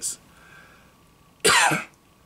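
A man's single short cough about one and a half seconds in.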